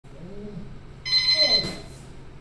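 Electronic boxing round timer sounding its start signal: one buzzing beep about half a second long, coming about a second in, marking the start of a three-minute round.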